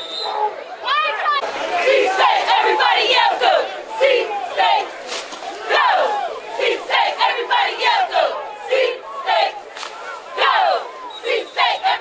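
A cheerleading squad shouting a cheer together: many voices calling out at once, with short sharp hits between the shouts.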